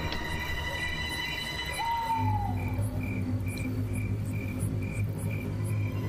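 Crickets chirping in a steady, evenly spaced rhythm, about two chirps a second, over a low sustained music drone that sets in about two seconds in.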